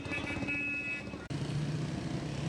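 Street traffic: motor vehicle and motorcycle engines running, with a cluster of steady high tones over the first second. After an abrupt change partway through, a steady low engine hum takes over.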